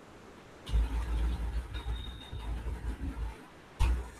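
A low rumble that starts about a second in and lasts nearly three seconds, uneven in level, followed by a short thump just before the end.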